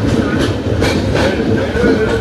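Passenger train running, heard from inside the coach: a steady rumble of wheels on track, with sharp clicks as the wheels cross rail joints, three of them about half a second apart in the middle.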